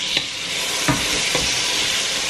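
Chopped onion, garlic and ginger frying in hot oil in a pot, with a steady sizzle. A wooden spoon stirs the mixture, with a few light scrapes and knocks against the pot.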